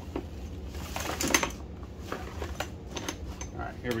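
Rummaging through a bin of nylon webbing straps: irregular clicks and clatters of plastic buckles knocking together, with a little rustling.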